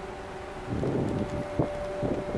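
Wind rumbling irregularly on the microphone from under a second in, with a short sharp thump near the end, over a faint steady hum of two held tones.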